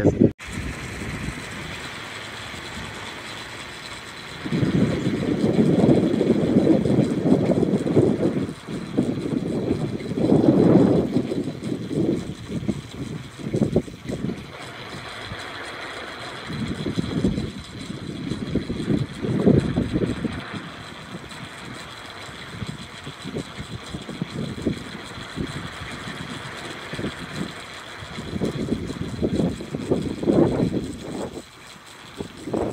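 Gusty wind rushing over the microphone around a spinning wind turbine, swelling and dying away in several gusts, with a faint steady high whine underneath.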